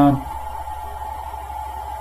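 A man's brief filled-pause "uh" right at the start, then a pause in the talk with only a steady low hum and a faint, thin steady tone underneath.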